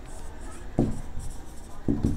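Marker pen writing on a whiteboard, with two louder short sounds, one a little under a second in and one near the end.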